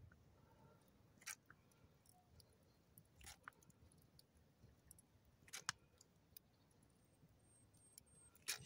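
Near silence broken by a few faint, sharp cracks from a wood campfire crackling under the pan, a second or two apart.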